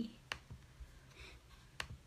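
Two short, faint clicks about a second and a half apart over quiet room tone.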